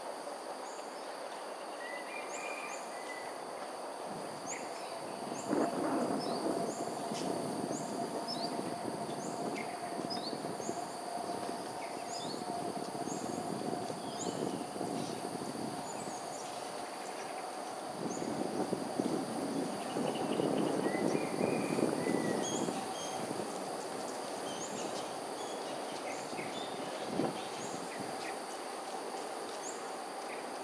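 Outdoor ambience: a steady high insect buzz with many short small-bird chirps over it. A low rushing noise swells up twice, first about five seconds in and again in the second half, along with a faint steady hum.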